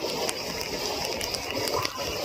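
Handheld phone jostled while its holder climbs a rope obstacle: scattered irregular clicks and rubbing over a steady rushing background.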